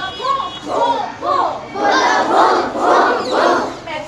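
A group of children shouting out together in a string of about six short calls, each rising and falling in pitch.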